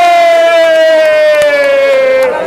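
A person's long, loud, high-pitched yell, held on one vowel and sliding slowly down in pitch.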